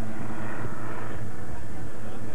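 A steady low hum and rumble, with faint voices mixed in.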